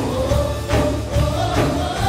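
Live worship band playing with several voices singing together, over acoustic guitar, keyboard and a steady drum beat.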